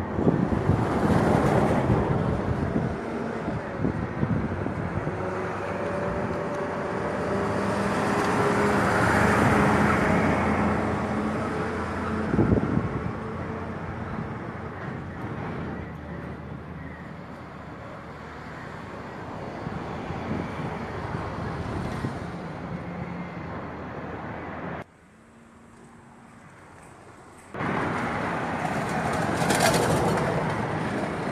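Street traffic noise, vehicles running and passing, swelling loudest a little before the middle. There is a single sharp knock midway, and the sound drops abruptly to a low muffle for about two seconds near the end.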